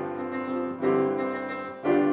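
Grand piano playing sustained chords, a new chord struck about a second in and another near the end.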